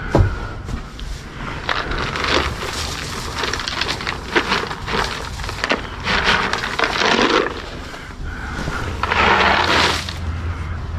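Rustling hay and knocks from handling a plastic feed tub, with a longer rattling rush about six seconds in and again near the end, as treats are tipped out of the tub to the calves.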